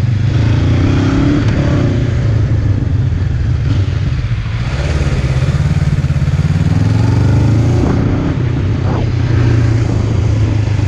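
Honda CB500F's parallel-twin engine running as the bike is ridden at low speed. The revs rise and ease off twice, once soon after the start and again from about six to eight seconds in.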